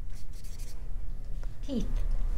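Felt-tip marker writing on chart paper in a few short scratchy strokes, then a woman's voice says a word near the end.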